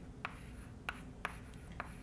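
Chalk writing on a blackboard: a few sharp chalk taps and short scrapes, about one every half second, as symbols are written.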